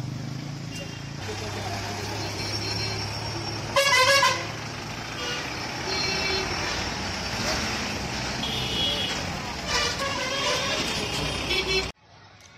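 Street traffic passing close by: a motor vehicle engine running steadily, with one loud horn honk about four seconds in and shorter honks later.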